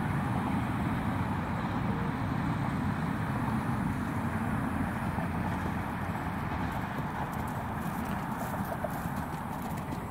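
A horse's hoofbeats as it canters over a dirt and grass arena, under a steady low rumble.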